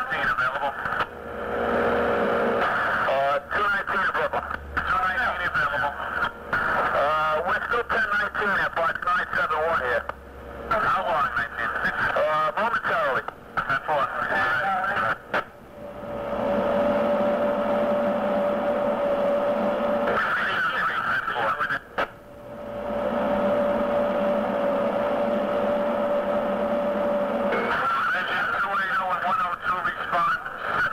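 Old 1970s fire-department two-way radio traffic: thin, narrow-band, hard-to-make-out voices over the channel. A steady tone comes on the channel twice, for about four seconds and then about five seconds.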